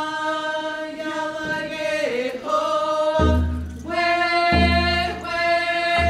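Haida dancers singing a paddle song together in long, held notes. About three seconds in, a hand drum joins with slow, deep beats, about one every second and a half.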